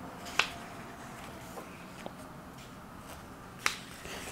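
Pages of a large art book being turned by hand: two sharp paper flicks, one about half a second in and one near the end, with a fainter tick in between.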